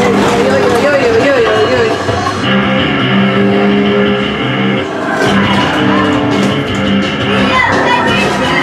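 Racing video game audio from a screen: music with long held notes, and car engine sounds under it.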